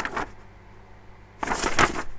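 Printed paper pattern sheets rustling as they are handled and flipped: a short rustle right at the start, then a longer one from about a second and a half in.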